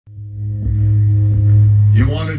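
Deep, steady low musical drone that swells in from silence and grows louder, opening a music bed.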